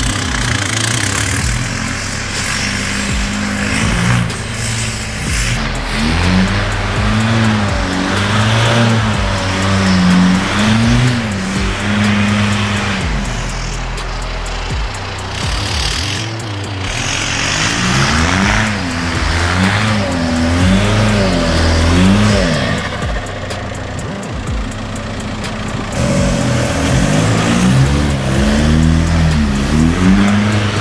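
Volkswagen 2.0 TDI (BHW) turbodiesel swapped into a first-generation Toyota Tacoma, revving up and falling back again and again as the truck is driven hard on snow, with its tyres spinning.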